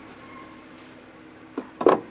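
Low background hush, then near the end a click followed by a few sharp knocks as a metal hive tool pries at the wooden frames of a beehive box.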